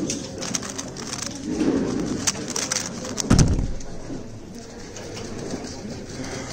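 Rapid clicking of a 3x3 speed cube being turned fast, then a loud thump a little over three seconds in, as the solve ends and the hands come down on the timer. Only a few scattered clicks follow.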